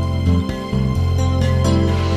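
Instrumental backing track of a worship song, a multitrack band arrangement, with a steady bass line that changes note a few times under sustained chords.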